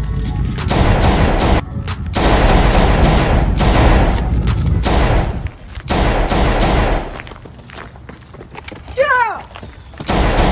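Long runs of rapid automatic gunfire, shot after shot in quick succession. There are short breaks about two seconds in and about five and a half seconds in, and the firing stops about seven seconds in.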